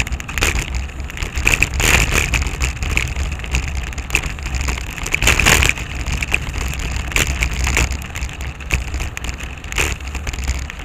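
Riding noise picked up by a bike-mounted camera: a steady wind rumble on the microphone, with crackling rattles and sharp knocks at irregular moments as the bicycle rolls over rough pavement.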